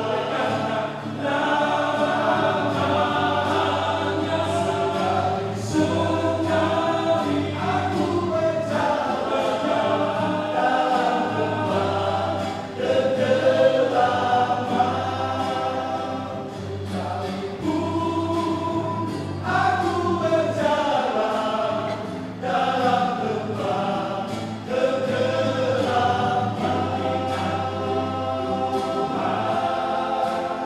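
Male vocal group singing a church song in close multi-part harmony, the parts moving together over a sustained low bass line, with a light acoustic guitar strummed underneath.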